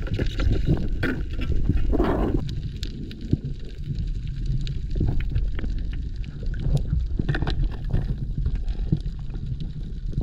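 Underwater sound picked up by a housed camera: a steady low rumble of water moving against the housing, with many scattered sharp clicks and crackles and a brief louder gurgle about two seconds in.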